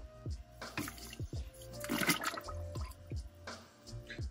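Water churning and bubbling in a large stockpot of crawfish-boil seasoning water, in several soft surges, with background music.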